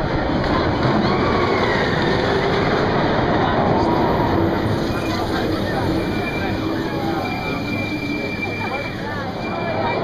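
Steel roller coaster train running along its track, a continuous rumble, with voices around it.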